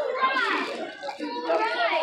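Indistinct talking, including a child's voice, with no words clear enough to make out.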